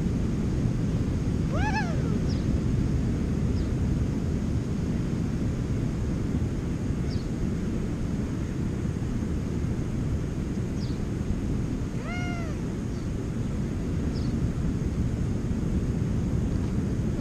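Steady wind and surf noise on an open beach. It is broken twice, about two seconds in and again about twelve seconds in, by a short high call that rises and falls in pitch, with a few faint high chirps between.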